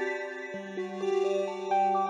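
Instrumental electronic music played back from an FL Studio project: held synth chord tones moving note by note, with a lower bass note coming in about half a second in.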